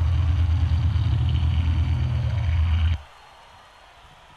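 A loud, steady low rumbling drone that cuts off abruptly about three seconds in, leaving only faint background noise.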